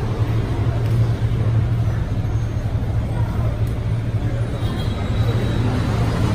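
Steady low rumble of road traffic, with faint voices murmuring over it.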